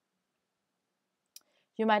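Near silence broken by a single short click a little over a second in, then a woman starts speaking near the end.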